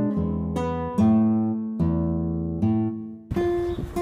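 Background acoustic guitar music, single plucked notes ringing and decaying one after another. It cuts off near the end.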